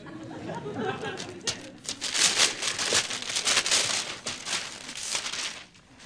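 Gift-wrapping paper being torn and crumpled as a flat present is unwrapped. It is a run of sharp crackles from about a second and a half in until near the end.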